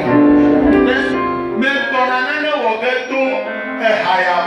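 Live worship music from a church band, a continuous melodic line over instrumental backing; the deep bass drops away about a second and a half in.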